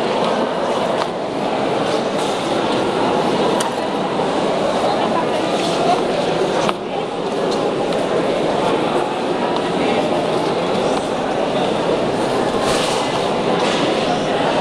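A crowd of people talking at once: a steady murmur of many voices in a large hall.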